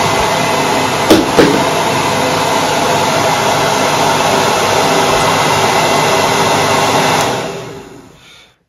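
Hand-held hair dryer running steadily at full blow, its air pushed down through a 50 mm plastic drain-pipe frame into a pair of shoes to dry them. Two short knocks come about a second in, and the dryer's noise fades out near the end.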